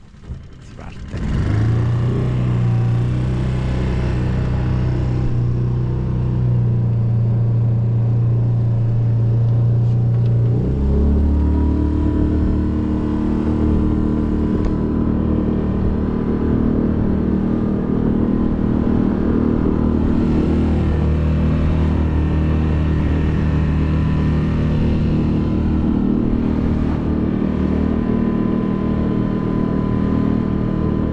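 Small wooden boat's motor running steadily under way, a low even hum whose pitch shifts about ten seconds in.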